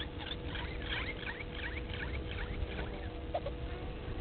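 Birds giving a rapid run of short, high, rising chirps that fades out about three seconds in, over a steady low hum and a low rumble.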